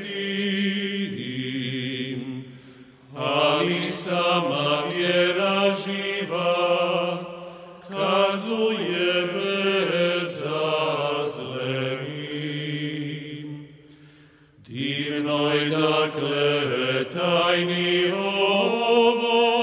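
Gregorian chant hymn sung in Croatian by a small group of male voices in unison, in long phrases with short breaths between them, one about 2.5 seconds in and another near the end.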